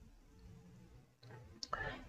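Near silence, then a man's faint mouth clicks and a short in-breath near the end.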